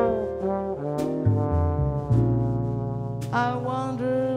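Jazz trombone playing a slow, lyrical ballad phrase with held notes, over a bass line and light drum or cymbal strokes from a small jazz combo.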